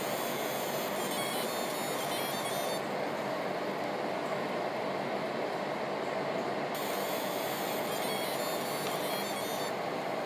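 Laser engraving machine running: a steady whir of fans and motors, with two stretches of high, stepping whine lasting about three seconds each, the first at the start and the second from about seven seconds in.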